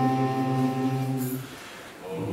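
A group of men singing together, holding a long chord that fades and stops about a second and a half in.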